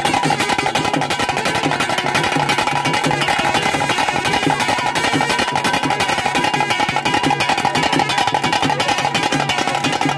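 Loud procession music driven by fast, steady drumming, with a sustained tone held through it. The dancing never pauses.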